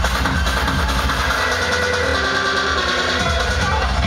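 Electronic dance music from a DJ set played loud in a club: a steady beat with held tones, the deepest bass dropping out briefly about two seconds in.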